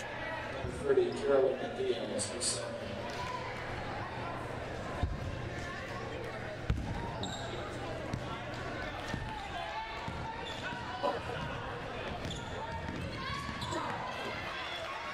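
A basketball bouncing on a hardwood gym floor as it is dribbled, a few thuds standing out, under the murmur of voices in a large echoing gymnasium.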